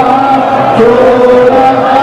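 Loud chanting voices holding long drawn-out notes, the pitch dipping and rising again about halfway through, over steady crowd noise.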